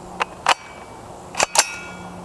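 AR-15 rifle shooting at steel targets: four sharp cracks in two close pairs about a second apart. The louder cracks are followed by a brief metallic ring.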